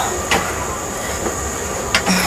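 Steady background noise with a constant thin high whine, broken by two short knocks about a second and a half apart.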